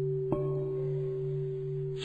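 A steady low musical drone, with a small bell struck once about a third of a second in, its ring fading slowly.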